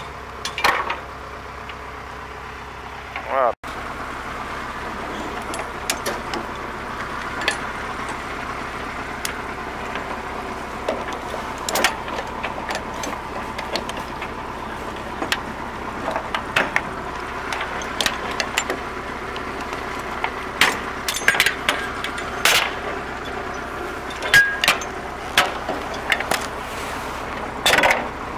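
Heavy steel tie-down chains clinking and clanking against a steel flatbed deck in sharp, irregular strikes as they are handled, more often near the end, over a steady idling engine.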